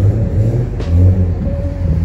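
City street traffic: a car driving through the intersection over a steady low rumble of traffic, loudest about halfway through.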